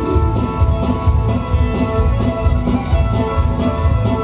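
Live band playing a lively square-dance tune, guitar over a steady quick beat.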